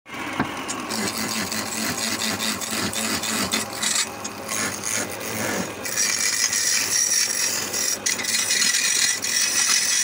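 Wood lathe spinning a wooden blank while a hand-held chisel cuts into it, a continuous rough scraping as shavings peel off. The cutting turns brighter and hissier about six seconds in.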